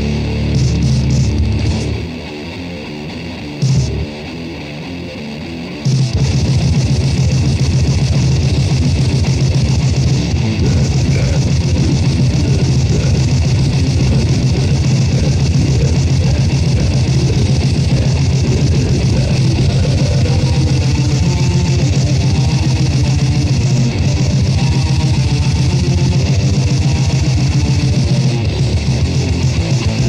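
Grindmetal recording with distorted electric guitars from a 1990 demo tape. About two seconds in the band drops back to a quieter stretch with a single hit near four seconds, then the full band comes back in at about six seconds with fast, dense playing.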